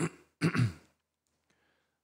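A man clearing his throat: a short rasp at the start, then a louder one about half a second in.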